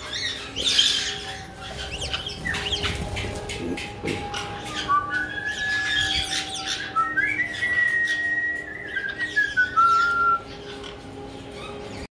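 Caique parrots chirping and squawking, with a run of short whistled notes from about five seconds in until about ten seconds in.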